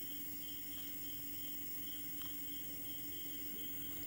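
Faint background noise: a steady low electrical hum with a thin high-pitched whine pulsing about twice a second, and one soft click a little after two seconds in.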